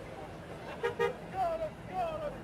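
A car horn gives two short toots in quick succession about a second in, over street traffic rumble, followed by shouting voices.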